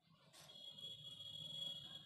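A faint, steady high-pitched beep starting about half a second in and lasting about a second and a half.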